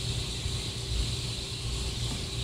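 Steady low rumble and hiss of background noise in a large room, with a faint steady hum.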